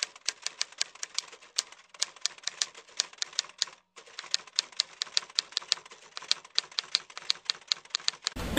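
Typewriter keys clacking in a quick, uneven run of strokes, typing out on-screen text, with a short break about four seconds in.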